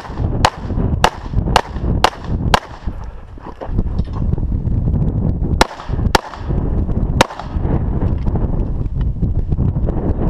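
9mm CZ SP-01 pistol firing in quick strings: five shots about half a second apart, a pause of about three seconds, then three more shots with the last a second after the others. A steady low rumble lies underneath.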